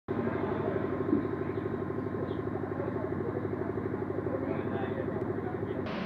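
A motor or engine running steadily, a low hum with a fast, even pulse, which cuts off abruptly just before the end.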